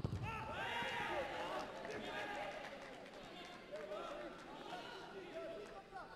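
A football struck hard in a shot at goal, one sharp thud right at the start. Several shouting voices follow and fade over the next few seconds.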